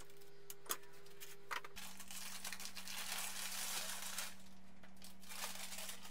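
A few sharp clicks as quick-release bar clamps are let off a steel mould, then a couple of seconds of baking paper crinkling and tearing as the overnight-cured carbon-fibre bracket is taken out of it.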